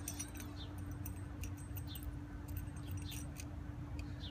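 Scattered light metallic clicks and clinks of small hardware being handled: a copper sleeve, nuts and washers on threaded rod being shifted and centred by hand, over a steady low hum.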